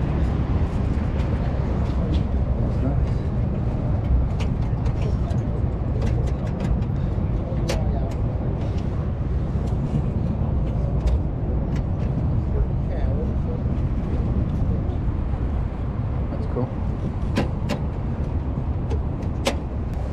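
Wind rumbling steadily on the microphone in an open field, with faint voices in the background and a few sharp clicks.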